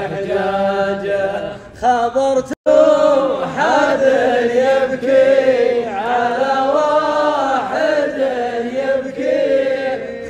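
A man chanting Arabic poetry unaccompanied into a microphone, in long drawn-out, wavering melodic lines. The sound cuts out for an instant about two and a half seconds in.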